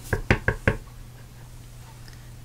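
A clear acrylic stamp block tapped several times in quick succession onto an ink pad to ink the stamp, a handful of short knocks within the first second, then quiet.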